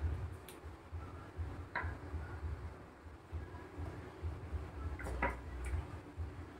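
Faint clicks and taps from a plastic squeeze bottle of cooking oil being handled over a pan, one early, one just before the halfway point and two close together near the end, over a low rumble.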